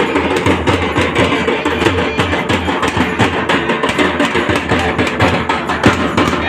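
Loud music driven by fast, continuous drumming.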